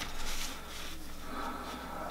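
Faint handling noise of hands re-threading a sewing machine, over a steady low hum.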